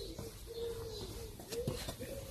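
A pigeon cooing faintly in the background, a low hooting call that dips briefly near the end.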